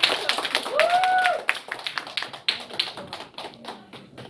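Scattered hand clapping from a small audience. It is dense at first and thins out over the few seconds, with one short vocal call about a second in.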